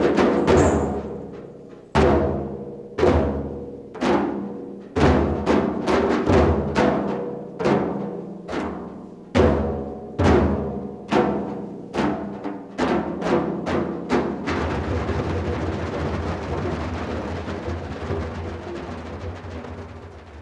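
Large hand-played frame drums struck together in single deep strokes that ring and decay, at first about a second apart, then quickening to about two a second. About three-quarters of the way in the strikes stop and a steady rushing wash of sound takes over, slowly fading.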